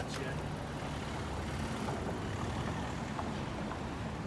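A van driving slowly past close by, its engine a steady low rumble, over street noise and a few voices.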